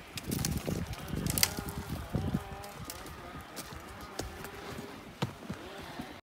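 Horse walking on dry forest ground, its hoofbeats coming as irregular knocks, with a faint wavering pitched sound behind them.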